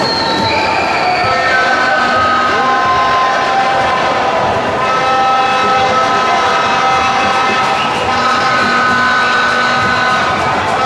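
Spectators' horns blowing, several long held tones at different pitches sounding together over loud crowd noise.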